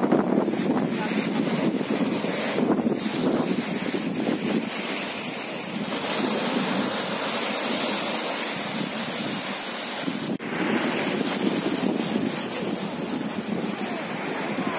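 Small sea waves breaking and washing up the shore in a steady rush of surf, with wind buffeting the microphone. The sound cuts out for an instant about ten seconds in.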